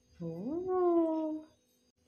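A person's voice: one long wordless sound that starts low, rises in pitch and then holds for about a second before stopping.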